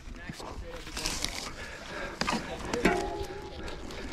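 Scuffling and sharp knocks of a mountain bike being handled on a dirt trail as the rider untangles it from a tree after getting stuck. Breaths and a brief held voice sound come about three seconds in.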